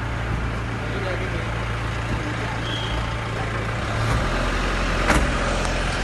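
Car engine idling, a steady low hum, with a sharp click about five seconds in.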